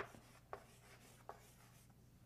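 Chalk on a chalkboard, faint: three short taps and scratches as letters are written, the first the loudest, then one about half a second later and another past the one-second mark.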